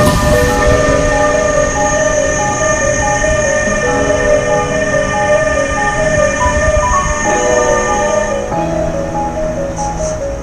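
Background music with a stepping melody, laid over the low rumble of an electric freight train rolling past close by, first its locomotives and then flat wagons.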